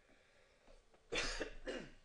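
Near silence, then a man's short cough about a second in.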